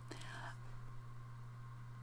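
Quiet room tone with a steady low electrical hum, and a faint breath in the first half-second.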